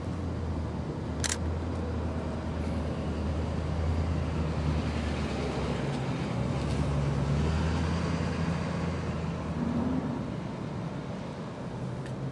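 A motor vehicle engine running with a low rumble that swells through the middle and eases near the end. There is one sharp click about a second in.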